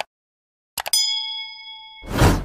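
A bell-like ding sound effect: a short click, then a couple of clicks just before the middle, and a chime that rings on several high tones and fades away over about a second.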